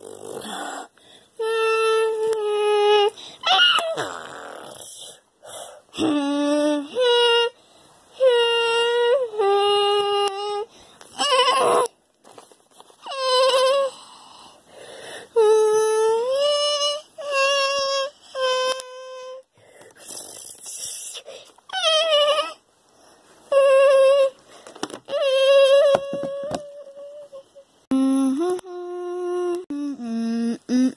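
A child's voice making monster roars and screeches: a long string of high, held cries, each about a second long, with short gaps between them.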